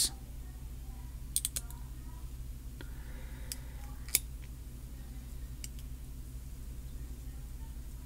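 Fingernails picking at and peeling the label sticker off an M.2 NVMe SSD, making a few faint clicks and scratches, the sharpest about four seconds in, over a steady low hum.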